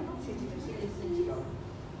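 Speech only: a woman talking, with short pauses between phrases.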